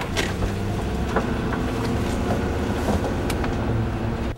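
Car cabin sound as the car drives: a steady low engine and road rumble with a few faint clicks and rattles.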